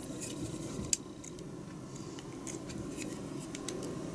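Small clicks and taps of plastic model-kit parts being handled and pressed together, with one sharper click about a second in and fainter ones later, over a steady low background hum.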